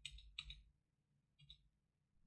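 Faint computer keyboard keystrokes: a few quick clicks in the first half second and one more about a second and a half in, otherwise near silence.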